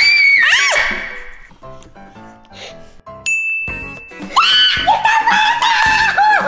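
Young girls' high-pitched excited screams and squeals, with a single short electronic ding sound effect about three seconds in, then a long, high scream near the end. Background music runs underneath.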